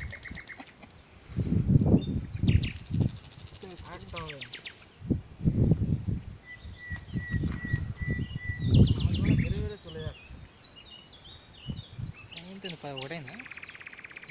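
Wild birds chirping and trilling repeatedly, with one thin steady whistle about halfway through, while low voices talk in short bursts.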